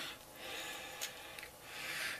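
Faint breathing through the nose, with two small clicks a little after a second in from handling an e-pipe as its top is unscrewed.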